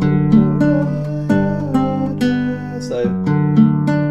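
Nylon-string classical guitar fingerpicked: a slow chord passage with a melody line over a held bass note, showing a suspension resolving in a Baroque chaconne-style progression.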